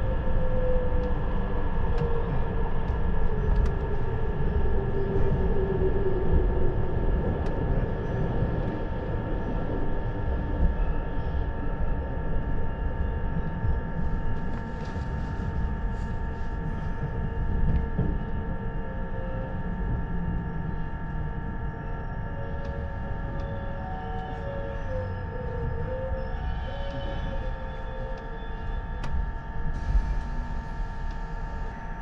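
Interior running noise of a 651 series electric train decelerating into a station: a steady low rumble of wheels on rail under a constant cabin hum, with a whine that falls in pitch over the first several seconds. The sound eases off as the train slows, and a few short faint squeals come near the end as it comes to a stop.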